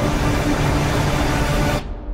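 Trailer sound design of the desert: a dense rushing roar of churning sand and wind with a low droning tone beneath, cutting off abruptly just before the end.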